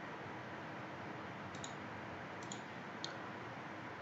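About three faint computer mouse clicks over a steady background hiss.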